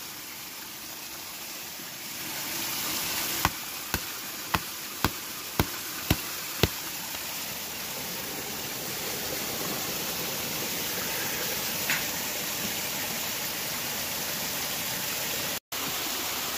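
Steel rock pick striking schist bedrock to break off a sample: seven sharp, clean strikes about two a second, over the steady rush of a creek.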